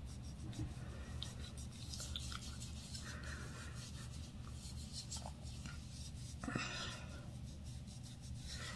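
Faint rubbing of a toner-soaked cotton pad wiped across facial skin, in a few soft swipes, over a steady low hum.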